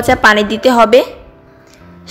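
A woman's narrating voice that breaks off about a second in, followed by a quiet pause with only a faint steady background.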